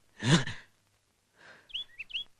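A person's short "eh" exclamation, a sigh-like grunt whose pitch rises and falls, about a quarter second in. A few faint, short high chirps near the end.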